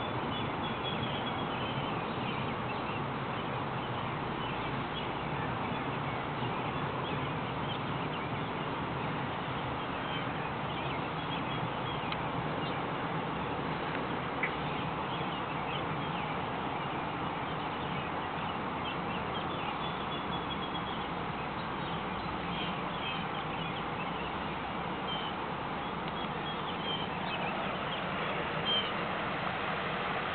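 Steady outdoor background noise with short bird calls scattered through it.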